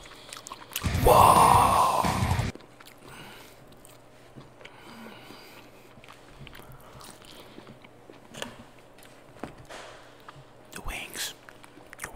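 Close-miked eating sounds: biting and chewing, with small clicks as a plastic sauce cup and food are handled by the microphone. About a second in, a loud rustling noise lasts about a second and a half.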